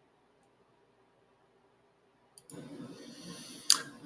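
Dead silence where the recording was paused, then faint room tone picks up about two and a half seconds in as recording resumes, with some low rustling and one short sharp click near the end.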